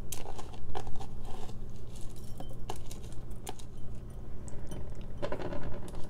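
Rinsed black rice grains dropping into a glass mason jar, heard as scattered light clicks and patter while fingers scrape the last grains from a plastic strainer bowl.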